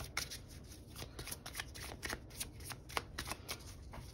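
A small deck of chakra oracle cards being shuffled by hand: a faint run of quick, irregular card clicks.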